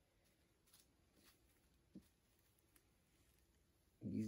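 Near silence: room tone, with a few faint soft ticks, one about halfway through.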